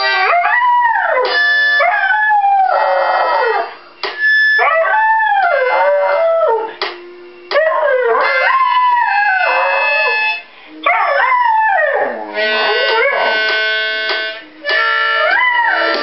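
A Portuguese Podengo howling: about six long howls in a row, each rising and then falling in pitch, over music.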